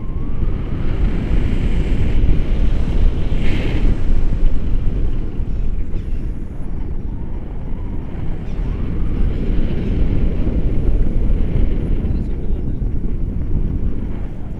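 Wind buffeting an action camera's microphone on a selfie stick during tandem paraglider flight: a loud, steady low rumble of rushing air, with a brief hiss about three and a half seconds in.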